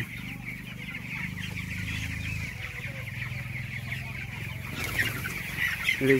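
A large flock of young broiler chickens, about 25 days old, peeping together in a dense, continuous chorus of short high calls. A low steady hum runs underneath for the first two and a half seconds.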